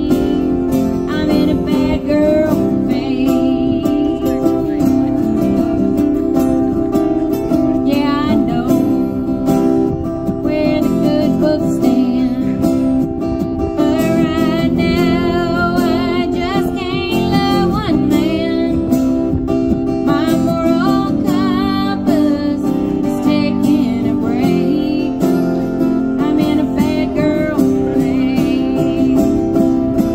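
A live acoustic country song: two acoustic guitars strummed, with a woman singing lead over them.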